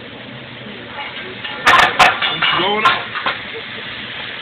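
Metal spatulas clacking sharply against a teppanyaki griddle, a quick cluster of strikes about a second and a half in, with voices exclaiming just after.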